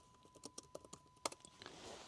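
Typing on a computer keyboard: a string of faint, light clicks, the loudest a little past halfway.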